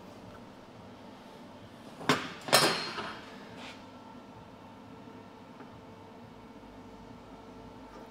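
Two sharp metal clanks about half a second apart, about two seconds in, the second ringing briefly: a steel shaft knocking against a steel welding table as it is handled. A faint steady shop hum lies underneath.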